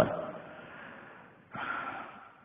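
The end of a man's spoken word fades away, then about a second and a half in there is a short, sharp intake of breath close to the microphone.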